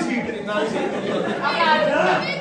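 Speech only: several voices talking over one another in a large hall, with the clearest voice near the end.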